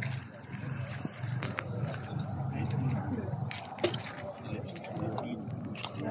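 Indistinct talking of bystanders standing nearby, with a single sharp click about four seconds in.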